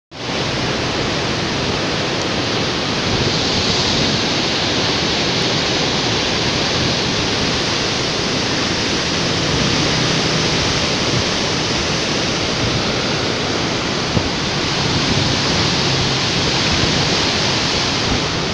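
Chenab River floodwater rushing turbulently through the Head Marala headworks: a loud, steady rush of churning water.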